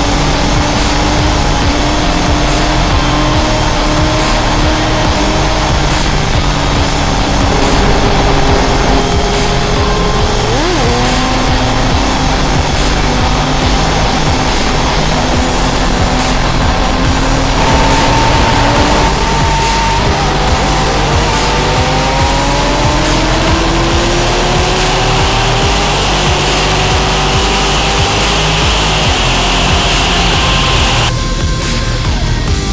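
Sportbike engine pulling through the gears at speed, its pitch climbing slowly for several seconds and dropping at each upshift, under a heavy rush of wind noise.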